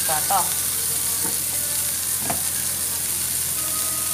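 Chicken skewers sizzling steadily on a hot ridged grill pan.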